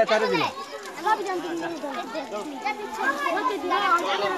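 A group of children talking and calling out over each other, a lively chatter of young voices.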